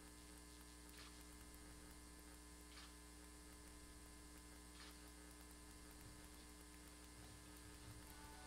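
Near silence: a steady electrical mains hum, with three faint clicks in the first five seconds.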